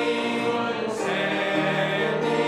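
Church congregation singing a hymn together in held notes, moving to a new note about a second in.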